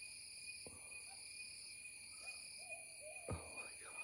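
Steady high-pitched insect chorus with a few short, arched calls from an unseen animal and two faint knocks.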